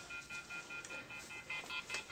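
Telephone call-ended tone, faint: a steady beep with a higher beep pulsing rapidly over it, about five pulses a second, the sign that the call has dropped.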